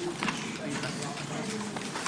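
Low murmur of many students talking among themselves in a lecture hall, with a few scattered clicks and knocks.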